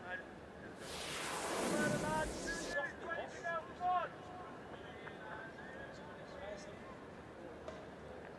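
Cricket stadium ambience with scattered distant voices and shouts. For about two seconds a rush of noise swells and then cuts off suddenly, under a cluster of short calls that carries on to about four seconds in.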